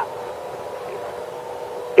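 Pause in speech: room tone in a hall with a faint steady hum of two even tones.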